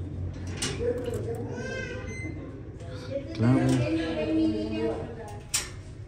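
Quiet, indistinct voices with a steady low hum underneath, and two sharp clicks, one early and one near the end.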